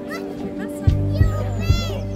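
Calm background music with a steady bass line, over the chatter of a crowd with children's voices. A child's high call comes near the end.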